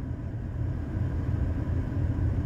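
Steady low rumble inside a car's cabin.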